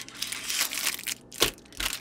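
Plastic wrapper of a sealed pack of peanut butter sandwich crackers crinkling as it is handled and turned over, with one sharper crackle about one and a half seconds in.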